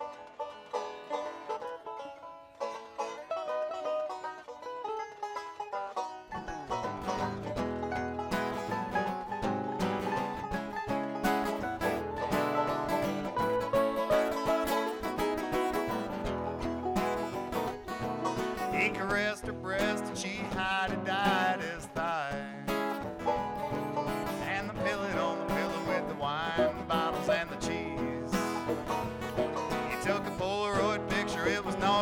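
Bluegrass band playing live on banjo, mandolin and acoustic guitar. The opening is sparse, and the full band comes in about six seconds in; singing joins about two-thirds of the way through.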